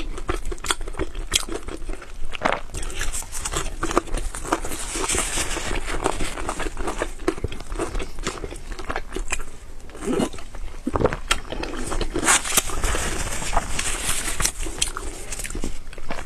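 Close-miked eating sounds: a person biting into and chewing a golden, bun-like piece of food, with a dense run of small wet mouth clicks.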